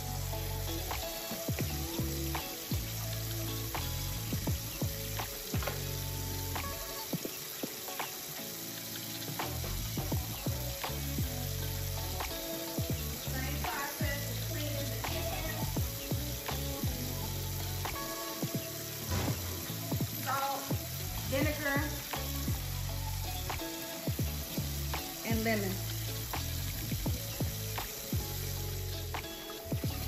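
Kitchen tap running in a steady stream into a stainless-steel sink and a plastic bowl of water holding raw chicken thighs, with background music playing under it.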